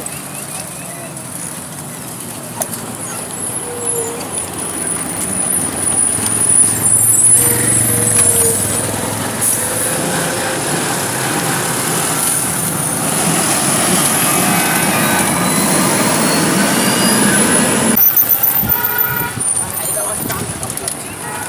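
Road traffic going past at close range, motor vehicles and a motorcycle, with a vehicle horn sounding briefly near the end.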